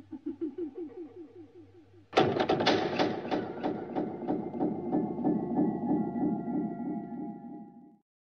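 A laugh, in quick pulses, fades over the first two seconds; then, about two seconds in, a loud dramatic music chord strikes and holds with a fast wavering tremolo, stopping suddenly.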